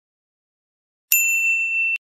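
A single bright bell ding sound effect about a second in, holding one steady high tone with fainter higher overtones for under a second before cutting off abruptly.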